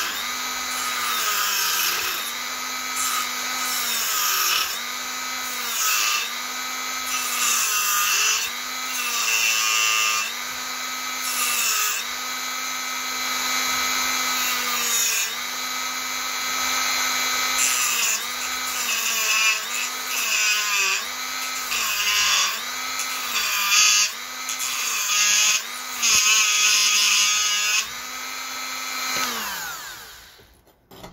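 Handheld rotary tool grinding into a coconut shell, its motor pitch dipping again and again, roughly once a second, as the bit bites into the shell. Right at the end the motor winds down and stops.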